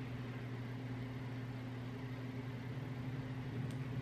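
Steady room tone: a low electrical-sounding hum with a soft hiss, with a couple of faint clicks near the end.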